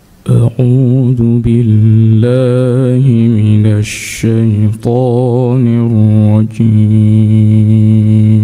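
A man's voice reciting the Quran in the melodic tilawah style, holding long notes decorated with wavering runs, with short breaks between phrases.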